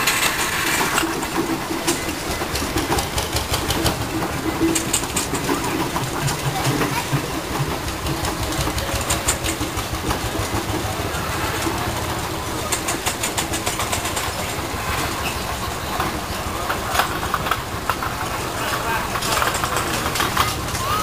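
Miniature steam traction engines and a small steam roller running past one after another, their exhaust chuffing and their works clicking in a steady stream, with people talking nearby.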